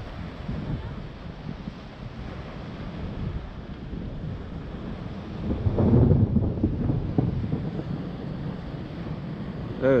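Wind buffeting the microphone on the shore over small waves breaking at the water's edge; the wind noise swells louder for a second or two about six seconds in.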